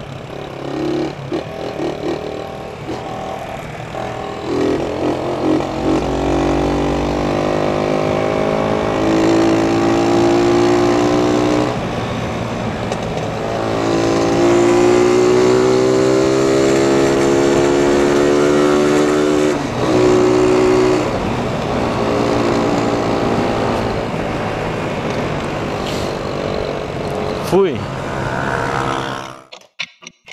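Small motorcycle engine running while riding in traffic, its pitch climbing several times as it accelerates and falling as it eases off, over steady wind and road noise. There is a brief sharp knock near the end, then the engine sound cuts off.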